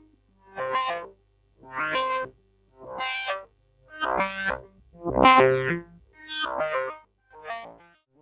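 Tesseract Radioactive Eurorack digital oscillator voice playing a sequence of short enveloped synth notes, about one a second, their tone shifting from note to note as its offset control is turned. A faint steady low hum from the recording equipment sits underneath.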